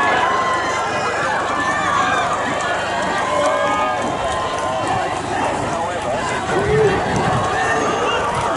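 Crowd of rowing supporters shouting and cheering the eights on, many voices overlapping at once, without a break.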